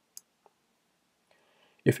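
A single sharp computer mouse click shortly after the start, then a fainter tick, against near silence.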